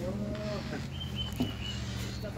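Wooden screen door swinging open on its hinges and long coil spring: a long, low creak that bends in pitch. About a second in, a thin high squeal follows, over a steady low hum.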